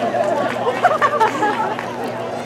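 Crowd chatter: several people talking at once, none clearly.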